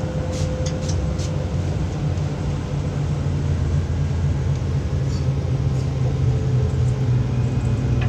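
Steady low engine rumble of nearby road traffic, a little louder in the second half, with a few light clicks in the first second or so.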